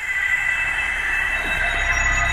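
Sustained high-pitched screeching tone, a sound effect at the opening of a music video's intro over its production logo, with a low rumble coming in near the end.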